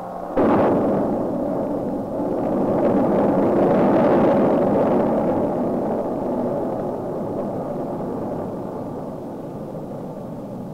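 Saturn I rocket's eight-engine first stage firing at liftoff: a loud, steady rocket noise that starts suddenly about half a second in, is loudest around four seconds, then slowly fades as the rocket climbs away.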